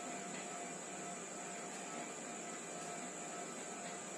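Steady faint hiss and electrical hum with a constant high whine, the background noise of the recording, with a few faint ticks of a ballpoint pen writing on paper.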